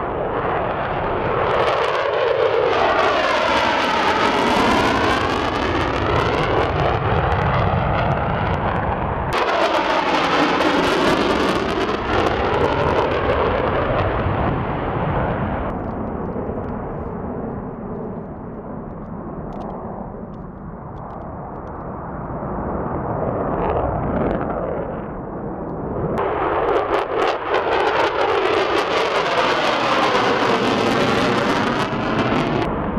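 Twin Pratt & Whitney F119 jet engines of F-22 Raptors taking off in afterburner and passing overhead: a loud, rushing jet noise that sweeps up and down in pitch as each aircraft goes by. The sound jumps abruptly between passes about a third of the way in and again near the end.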